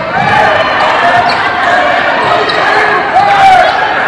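Live basketball game in a gym: a ball dribbling on the hardwood amid the voices of players and spectators.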